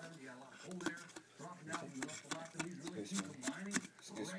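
Quiet adult speech in the background, with a few small handling clicks, the sharpest about a second in and just before the end.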